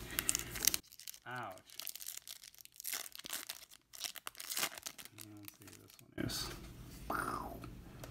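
Foil wrapper of a Topps baseball card pack being torn open and crinkled by hand. The rip was really loud and has been turned down, so after a loud first second of crackling it goes on faintly before rising again near the end.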